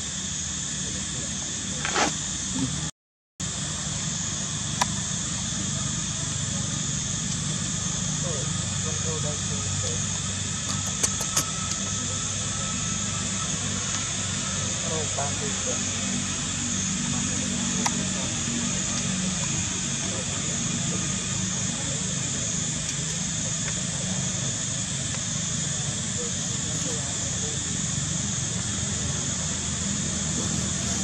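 Steady background hum and hiss with faint voices in the distance, a few small clicks, and a brief complete drop-out about three seconds in.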